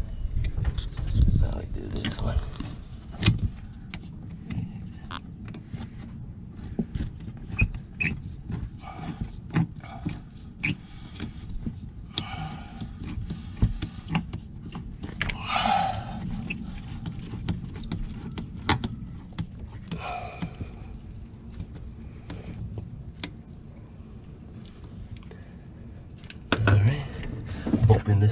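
Hand screwdriver tightening hose clamps on rubber heater hoses: irregular small clicks, scrapes and knocks of the tool and fittings.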